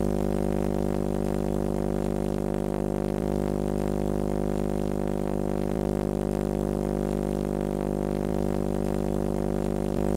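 Base-fed vacuum tube Tesla coil running unballasted on unrectified AC from a microwave oven transformer, its spark streamers giving a loud, steady buzzing drone with many even overtones.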